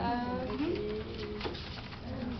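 A person's voice drawing out one long, low, humming 'ooh'-like sound. Its pitch slides down at the start, then holds level with a small rise in the middle, fading about a second and a half in.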